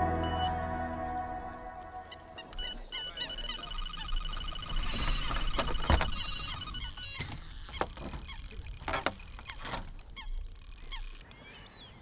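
Electronic carp bite alarm sounding a fast run of high beeps, from about three seconds in to about seven, as a carp takes line on a bite; it stops once the rod is picked up. Fading music can be heard at the start.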